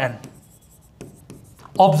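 Pen writing on a teaching board as a word is written and underlined: a light scratching, then a few short taps and strokes.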